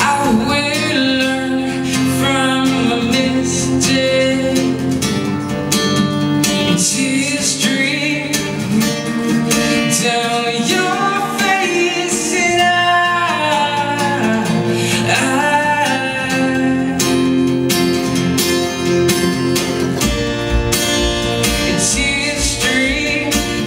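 Male voice singing live to his own strummed acoustic guitar.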